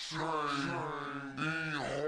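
A voice singing long, drawn-out held notes, one lasting over a second followed by a shorter one.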